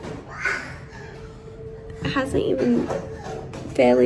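Short vocal sounds and calls from a toddler and a woman, the loudest near the end, over a faint steady tone.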